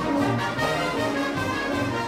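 Wind band with trumpets playing, holding sustained chords.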